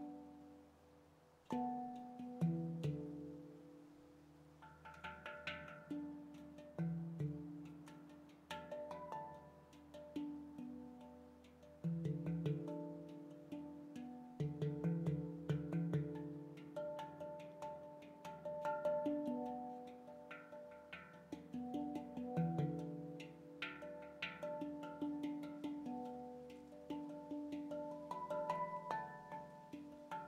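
Veritas Sound Sculpture stainless-steel handpan in F♯ pygmy scale, played freely by hand: ringing notes struck one after another with quick light taps between them. The opening note fades away before playing picks up again about a second and a half in.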